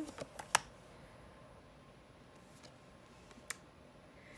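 A few light, sharp clicks of tarot cards being handled, a quick cluster in the first half second and a single one about three and a half seconds in, over quiet room tone.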